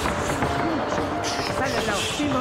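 A voice speaking over background music with steady held notes.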